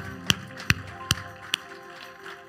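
Hands clapping in a steady beat, about two and a half claps a second, over a held music chord.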